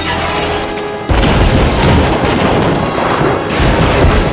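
Action-film soundtrack: orchestral score, then a sudden heavy crash about a second in, followed by loud continuous rumbling and clattering.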